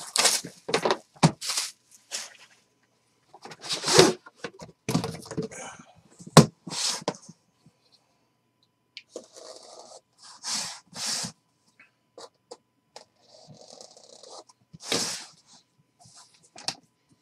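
Plastic shrink-wrap being torn and crinkled off a trading-card box, with rustling and scraping as the cardboard box and its sleeve are handled. There is one sharp click about six seconds in, and a few small clicks near the end.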